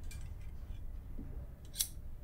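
Metal scissors snapping shut once with a sharp click near the end, with a fainter tick of the blades near the start.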